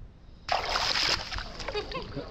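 Pool water splashing and sloshing around a waterproof action camera at the surface, starting abruptly about half a second in and carrying on unevenly.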